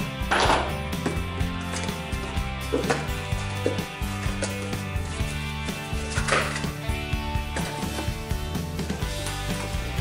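Background music with low steady notes, over a cardboard box being opened by hand: flaps rustling and scraping, loudest about half a second in and again about six seconds in.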